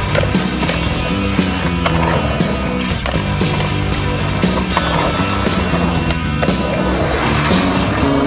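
Rock music soundtrack with a steady drum beat, over a skateboard's wheels rolling and its trucks grinding on concrete.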